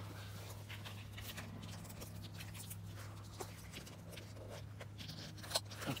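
Soft rustling and a few short clicks as a solar shower bag's buckle strap is fastened around a pine branch, with a sharper click about five and a half seconds in, over a steady low hum.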